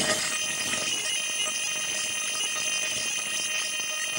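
Experimental electronic noise: a dense, steady cluster of many high-pitched tones over hiss, like a shrill alarm-like drone, with faint glitchy crackle.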